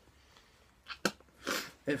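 Short mouth sounds of a tobacco chewer spitting into a handheld spit cup: a sharp click about a second in, then a brief spitting hiss half a second later, after a quiet stretch.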